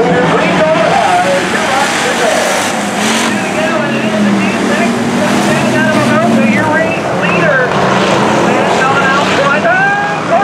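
Hobby stock race cars' engines running as the cars lap a dirt oval, with people talking over them.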